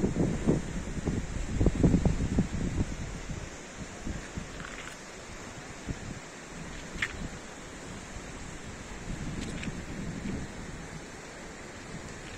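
Wind buffeting the microphone in heavy gusts for the first three seconds, then more lightly, over a steady rushing noise from the flooded river.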